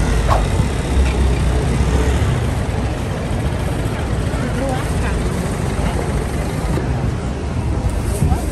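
Busy city-square ambience: road traffic running steadily, with a low rumble and faint voices of passers-by.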